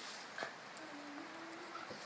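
Two mixed-breed dogs play-fighting. One gives a low, drawn-out vocal sound for about a second in the second half, stepping slightly up in pitch. A single sharp click about half a second in is the loudest sound.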